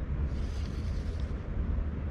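Wind rumbling steadily on the microphone, a low buffeting with no distinct clicks or strokes.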